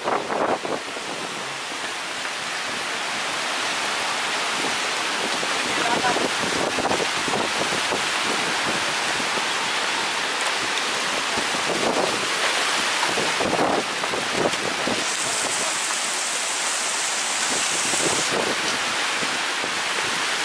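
Heavy wind-driven rainstorm: rain lashing the thatched roof and bamboo slat floor of an open hut as a loud, steady hiss, with wind buffeting the microphone.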